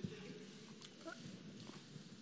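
Faint room sound of a hall between speakers: low murmuring voices with a light click at the start and a few soft knocks, plus a short faint chirp about a second in.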